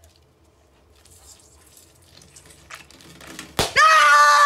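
Faint rustling and squeaking as an orange is worked over an inflated rubber balloon, then the balloon bursts with a sharp pop about three and a half seconds in. A loud scream from a man follows at once.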